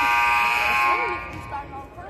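Gymnasium scoreboard buzzer sounding a steady, loud blare that cuts off about a second in and echoes briefly around the hall, with crowd chatter underneath.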